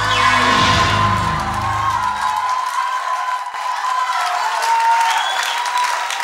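A live band's closing chord rings and cuts off about two and a half seconds in, while a studio audience applauds and cheers over it.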